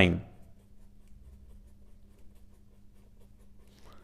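Pen scratching on paper in a quick run of short, faint strokes as a row of numbers and multiplication signs is written out.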